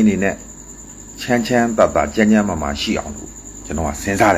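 A man talking in Burmese, in short phrases with brief pauses, over a thin, steady, high-pitched whine.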